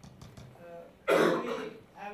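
A person coughs once, clearing the throat, in a sudden loud burst about a second in.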